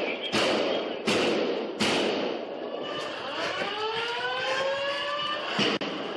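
Three sharp bangs about 0.7 s apart, echoing down a hallway, then a siren-like wailing tone that rises slowly and holds for about two seconds.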